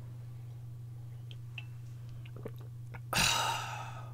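A person drinking from a metal tumbler, with faint small clicks of sipping and swallowing, then a loud breathy exhale about three seconds in that fades out over most of a second. A steady low hum runs underneath.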